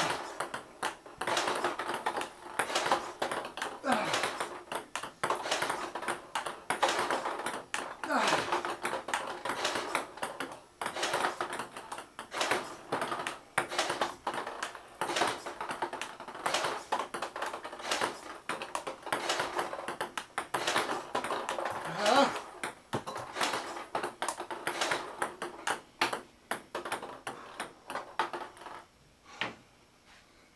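Table tennis rally: quick, sharp clicks of a ping-pong ball off the paddle and the table, several a second, which stop about a second before the end.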